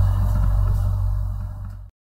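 Steady low electrical hum with faint hiss from the microphone recording chain, slowly fading, then cut off to silence just before the end.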